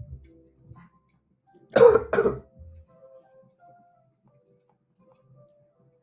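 A man coughs twice in quick succession about two seconds in, over quiet background music.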